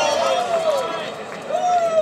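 A voice making long, drawn-out sounds that glide slowly in pitch, pausing briefly just past halfway, over faint arena crowd noise.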